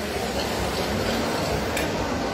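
Cod tripe sizzling steadily in oil in a casserole on a gas hob, a gentle sauté rather than a hard fry.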